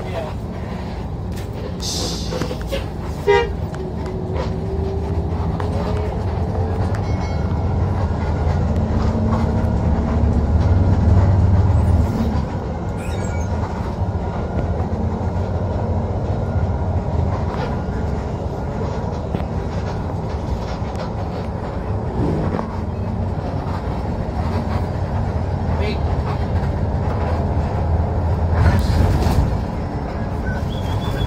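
Intercity bus's diesel engine running under way with a steady low drone and road noise, heard from the driver's cab. The engine grows louder from about eight seconds in and drops back suddenly at about twelve seconds; a faint rising whine a few seconds in and a few brief knocks.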